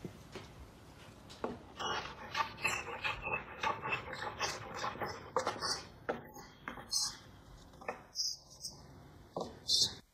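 Japanese roughing plane pulled in a rapid run of short strokes across the end of a board, each stroke taking off a shaving as it removes warpage at the end. The strokes start about a second and a half in, with the sharpest stroke near the end.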